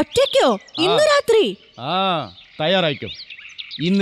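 Small birds chirping over and over behind spoken dialogue between a boy and a man.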